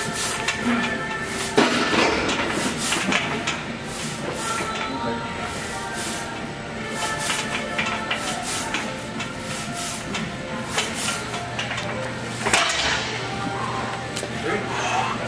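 Gym ambience: background music and distant voices, broken by irregular sharp clanks and clinks.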